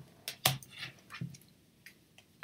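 Soft clicks and taps of tarot cards being handled and slipped back into the deck, about five short sounds with the loudest about half a second in.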